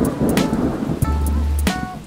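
Thunder and rain sound effect, a rumble with rain hiss that eases off after about a second, over plucked-string background music.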